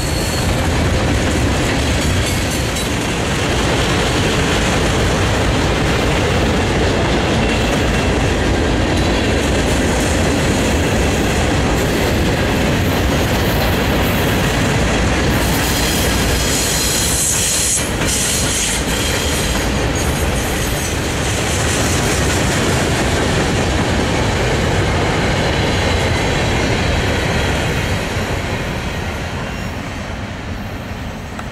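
Freight train cars rolling past close by: steel wheels rumbling and clacking on the rails, loud and steady. About halfway through, a few seconds of high-pitched wheel squeal. Fading near the end as the last cars pass.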